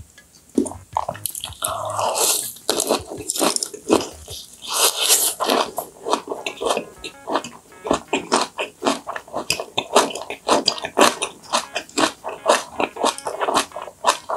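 Close-miked chewing of a mouthful of raw yellowtail sashimi wrapped in a perilla leaf with pepper and garlic. It is louder and crunchier in the first few seconds, then settles into a steady rhythm of wet chews, about three a second.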